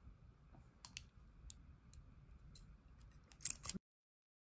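Light plastic clicks and taps from a small folding plastic compact mirror with a built-in comb being handled and opened: a few single clicks, then a quick cluster of louder clicks near the end that stops abruptly.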